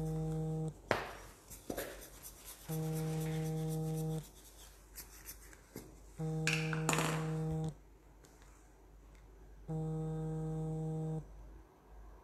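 A low, steady buzzing tone sounds four times at an even pace, each about a second and a half long and starting every three and a half seconds. Between the buzzes come clicks and knocks of small objects being handled on a table.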